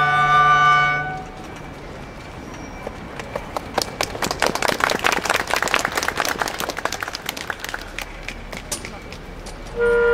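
A flute and clarinet ensemble holds a final chord that cuts off about a second in. Scattered hand clapping follows, swelling in the middle and thinning out, and the ensemble starts playing again just before the end.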